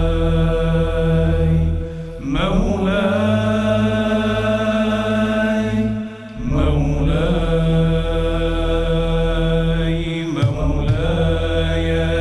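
A male solo voice sings Sufi devotional inshad in long, held, ornamented phrases over a low sustained drone from a male chorus. The voice breaks briefly about two, six and ten seconds in.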